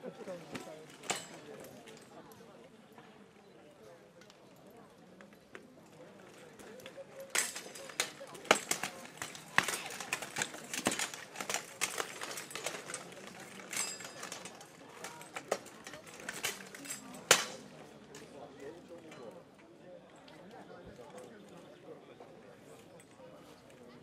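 Steel swords and plate armour in a bout of armoured knightly combat: a run of sharp metal strikes and clatter, busiest in the middle, with the loudest blows about eight and seventeen seconds in.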